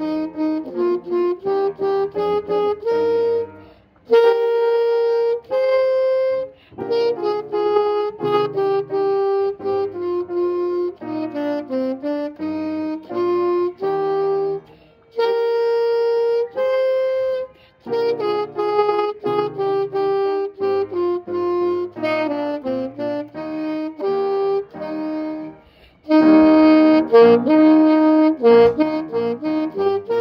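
Saxophone playing a melody of separate notes in short phrases, with brief breaks between them; the last few seconds are louder.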